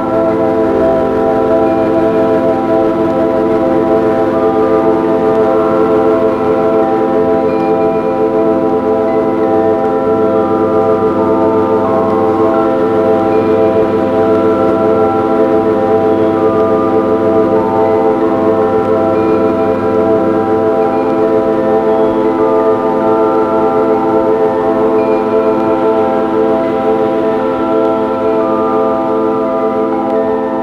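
Ambient drone music in A minor: a dense, sustained chord of many held tones layered from four-track tape loops, cassette, turntable and synthesizer through a mixer. Higher notes fade in and out slowly over the steady drone, and the lowest notes drop away about two-thirds of the way through.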